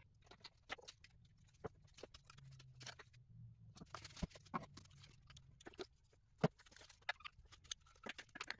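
Faint, scattered light clicks and knocks of hands handling parts on an engine.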